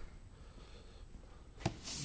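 Quiet room tone, then one sharp knock near the end as the boxed amplifier is picked up and handled.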